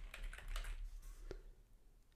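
Faint typing on a computer keyboard, a few light keystrokes that stop about a second and a half in.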